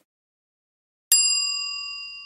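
A single notification-bell ding sound effect, struck about a second in and ringing on as a bright chime of several high tones that slowly fade.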